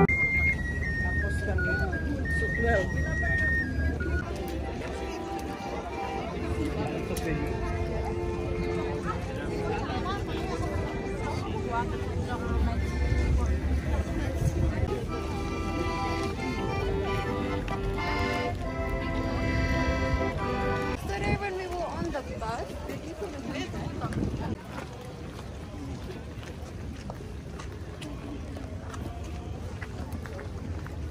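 Street buskers' music amid crowd chatter: a handpan's ringing notes die away in the first seconds, then an accordion plays held notes and chords that fade out after about twenty seconds, leaving the murmur of passing voices.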